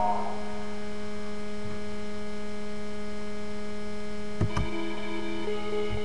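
Steady electrical hum between tracks, with two short clicks about four and a half seconds in, followed by faint notes.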